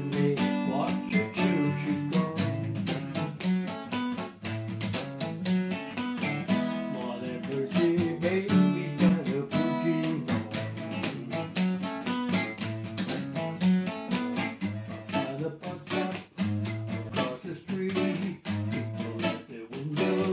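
Acoustic guitar strummed in a steady rhythm, with bass notes moving underneath: a solo guitar accompaniment played without singing.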